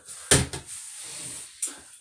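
A sharp knock about a third of a second in, then soft handling noise and a lighter click near the end: a wooden-handled rubber mallet being put down and gear handled beside it.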